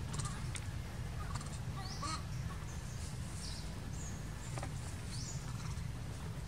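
Outdoor forest ambience: a steady low rumble, with several short, high chirps that rise in pitch scattered through it, about two seconds in, three and a half seconds in, and again near the end.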